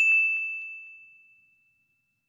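A single high-pitched ding sound effect, one clear tone that fades away over about a second and a half.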